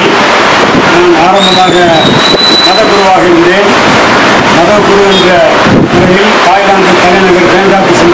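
A man speaking into a handheld interview microphone, over steady background noise.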